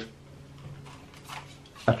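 Faint light clicks and rustles from a hand-held plastic RC buggy being turned over, in an otherwise quiet pause; a man's voice comes back in near the end.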